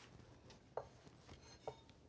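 A plate and a fork set down on a wooden cutting board: two light knocks, about a second apart, the second with a brief ring.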